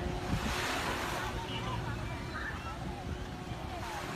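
Small waves washing onto a sandy beach, with wind buffeting the microphone; a wave surges up about half a second in and falls away after a second or so.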